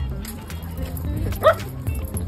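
A dog gives a single short, high-pitched yip about one and a half seconds in, over background music.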